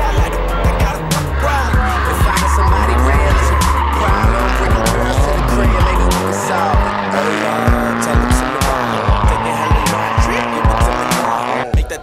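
Nissan S13 'Sil80' drift car sliding through corners: the engine revs rise and fall while the tyres squeal in long, wavering squeals.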